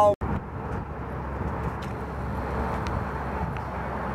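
Steady outdoor background noise, an even hiss with a low rumble underneath, with a few faint ticks.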